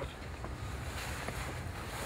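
Wind on the microphone: a steady low rumble with a faint outdoor hiss.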